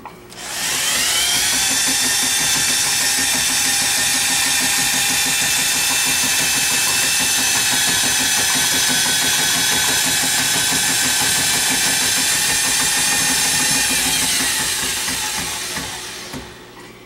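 Electric drill driving a drum drain snake, spinning its cable into a kitchen sink drain line. The motor whines up to speed about half a second in, runs steadily while the rotating cable is pushed against a snag in the pipe, then winds down near the end.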